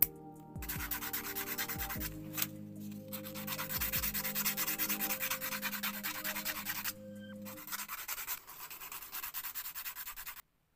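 A small cut piece of clear plastic rubbed back and forth against sandpaper in quick, rapid strokes, smoothing its edges, with two brief pauses. It follows a single snip of scissors at the very start.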